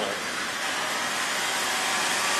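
The internal grinding spindle of an Okamoto IGM-15NC CNC internal grinder started up and running: a steady high-pitched whirring hiss with a faint whine, growing slightly louder as it comes up to speed.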